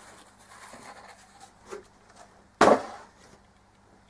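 Tissue paper and a cardboard box being handled as a wrapped object is drawn out: soft rustling, with one loud, sudden rustle about two and a half seconds in.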